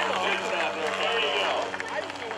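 People talking in the background, with a steady low hum underneath.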